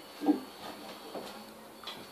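Faint handling noise as a classical guitar is lifted and set aside: a soft knock about a third of a second in, then a few lighter bumps.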